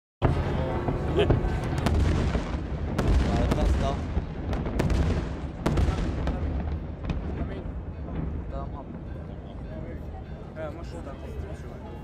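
Fireworks going off at a distance: sharp bangs every second or two over a background of crowd voices, loudest in the first half.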